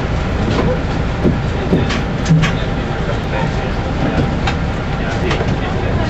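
Steady engine and road rumble heard inside a running city bus, with short rattles and clicks from the bus body and fittings, and indistinct passengers' voices.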